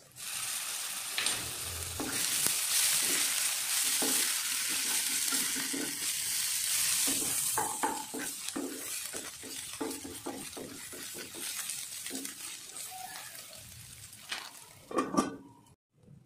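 Ginger paste sizzling loudly as it drops into hot oil with frying onions and green chillies in a non-stick kadai. A wooden spatula then stirs and scrapes the mixture in short strokes as the sizzle dies down.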